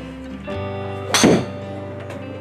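A golf driver swing in an indoor screen-golf bay: one sharp thunk about a second in as the shot is struck, over background music.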